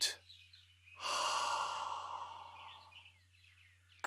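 A long, audible breath out, a sigh through the mouth that starts about a second in and fades away over about two seconds: the exhale of a guided deep-breathing exercise.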